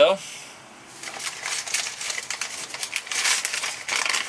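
Paper burger bag crinkling and rustling as it is pulled open by hand, starting about a second in and going on in irregular rustles.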